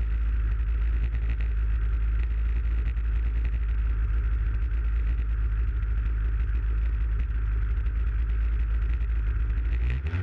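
Aerobatic aircraft's piston engine idling steadily on the ground, its propeller turning, with a deep steady rumble.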